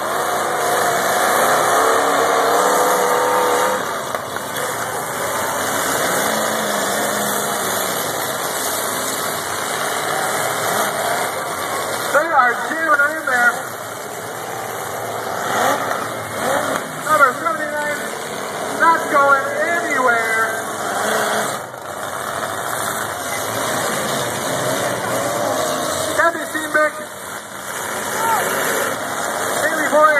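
Demolition derby cars' engines running and revving together as a dense, continuous din. Voices cut in at several points from about twelve seconds on.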